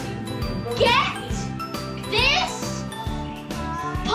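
A child's high-pitched, wordless squeals, twice, over background music with a tinkling melody.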